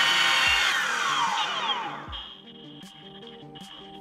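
Electric skateboard wheel and motor spinning down: a loud whir whose pitch falls steadily and fades over about two seconds, over background music.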